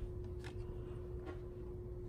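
Small self-priming water pump's motor running with a steady hum, with a few faint clicks.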